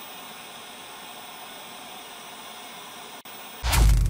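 Television-static hiss sound effect, steady and even, briefly cutting out near the end. About three and a half seconds in, it gives way to a sudden loud deep boom with a falling swoosh.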